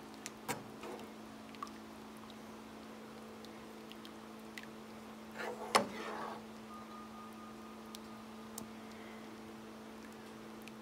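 A metal spoon stirring thick Alfredo sauce in a stainless skillet, giving light scattered clicks and taps against the pan and one louder clack a little past halfway, over a steady low hum.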